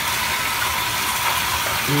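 Lush Rocket Science bath bomb fizzing as it dissolves in a tub of hot bathwater, a steady sizzling hiss.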